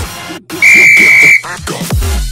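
A single steady high-pitched beep, under a second long, from a workout interval timer signalling the start of the next exercise. It sounds over electronic dance music whose bass drops out and comes back near the end.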